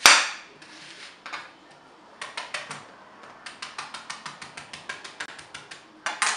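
Knife chopping an onion on a glass cutting board. A loud knock comes first, then a few scattered taps. About two seconds in, a fast even run of sharp clicks begins, about eight a second.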